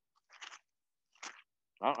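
Two brief papery rustles of Bible pages being turned while looking up a passage, then a man starts speaking near the end.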